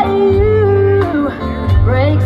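Live country band playing: a long held melodic note over steady bass and drums, then a new phrase of rising notes near the end.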